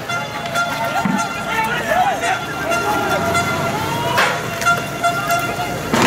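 A horn held on one steady note over shouting voices, with a single sharp bang about four seconds in.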